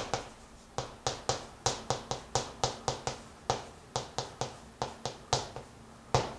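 Chalk writing on a chalkboard: a quick series of sharp taps and short scrapes, about four to five a second, each stroke of the characters striking the board, after a brief pause near the start.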